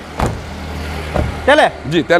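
A single short knock about a quarter of a second in, a car door being shut, over a steady low hum; a man starts speaking near the end.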